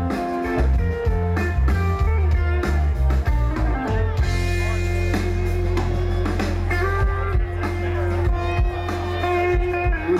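Live band playing an instrumental passage on guitar, electric bass, keyboard and drums, with no singing; a low bass note holds steady through the second half.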